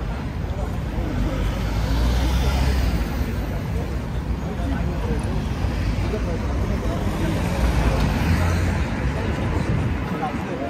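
Busy city junction traffic: cars passing close with a low engine and tyre rumble that swells twice, about two seconds in and again near eight seconds, over a steady hubbub of passers-by's voices.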